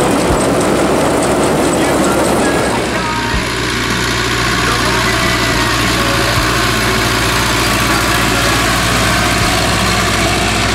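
Farm tractor diesel engines working in the field. For about the first three seconds a Renault tractor runs pulling a round baler, with a dense, noisy sound. Then the sound changes abruptly to a small red tractor's diesel engine running steadily as it pulls a tine harrow.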